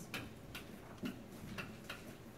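Dry-erase marker writing on a whiteboard: about five short, sharp tip strokes and taps, unevenly spaced.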